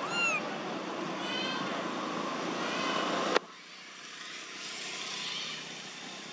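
Baby macaque giving short, high-pitched, arching coo calls, several in the first three seconds, over steady background noise. Just past three seconds the sound cuts off abruptly, leaving a quieter background with fainter calls.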